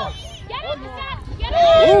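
Sideline spectators' voices talking and calling out, then a loud, drawn-out "Oh!" near the end as the play builds.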